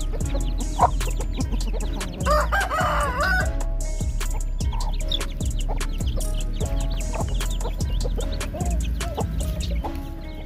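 Chickens clucking, with a rooster crowing once, a wavering call of about a second, a little over two seconds in. Steady background music plays under it.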